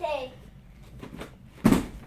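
A child landing with a single thud on a folding foam gymnastics mat near the end, after a brief voice at the start.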